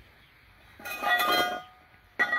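Cast-aluminium intake manifold shifted by hand on concrete: a brief scrape with a metallic ring, about a second in, lasting under a second.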